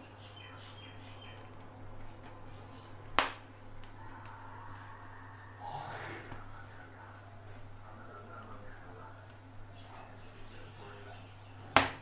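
Gas stove burner flame under a wire roasting grill of pointed gourds, a quiet steady low hum, broken by two sharp clicks, one about three seconds in and a louder one near the end.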